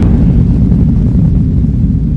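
Deep low rumble, the drawn-out tail of a cinematic boom sound effect, slowly dying away.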